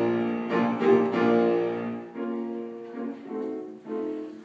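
Piano playing a passage of chords in a choral piece. It is full and loud for about the first two seconds, then softer and lighter with the low notes dropping out.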